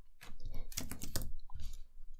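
Typing on a computer keyboard: a quick run of keystrokes entering code.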